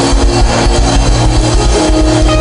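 Instrumental music: sustained guitar and keyboard chords over a fast, steady pulsing bass.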